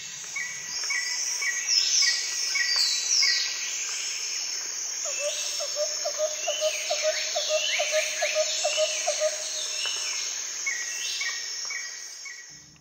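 Raucous jungle soundscape: a dense chorus of insects with many overlapping bird calls, repeated falling whistles high up. Through the middle a rapid pulsing call sounds lower down. The recording fades in at the start.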